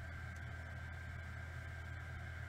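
Steady background hum of the recording: a low hum with a faint, thin, steady high tone above it and light hiss. No distinct events.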